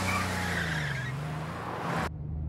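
Car engine running with tyres squealing as the car swings through a sharp turn, the engine note dipping and then rising again. The sound cuts off suddenly at the end.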